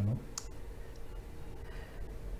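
A pause in the talk: faint room tone with a steady low hum, and a single small click about half a second in.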